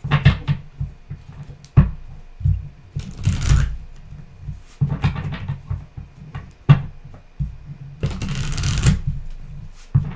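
A tarot deck being shuffled by hand: bursts of cards sliding and slapping together, with short clicks between them and the longest burst, about a second long, near the end.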